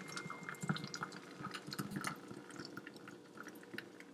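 A thick protein shake pouring from a glass blender jar into a plastic bottle, heard as faint, irregular little splashes and drips.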